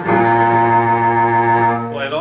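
A recorded solo cello played through Nola Metro Gold Series II loudspeakers: one long, low bowed note held steady for nearly two seconds, fading near the end.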